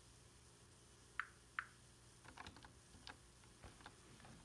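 Faint clicking of computer keys: two sharp clicks a little under half a second apart, then a run of quicker, quieter taps like typing.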